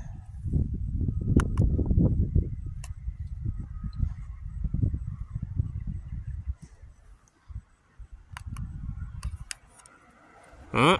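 Wind buffeting the microphone in uneven gusts that die down after about six and a half seconds, with a few faint sharp clicks.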